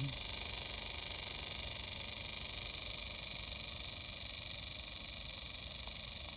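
MSM Clyde 4cc twin-cylinder oscillating model steam engine running fast with its steam valve fully open, hardly audible: a quick, even beat under a steady hiss.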